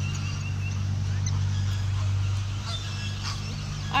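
A steady low hum, with a faint thin high tone in the first second.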